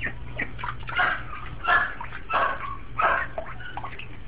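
A duckling giving short, harsh 'barking' calls over and over, about one every two-thirds of a second, over a steady low hum.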